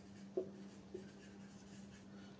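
Faint strokes of a marker pen writing on a whiteboard, with a light tap about half a second in and another near one second, over a low steady hum.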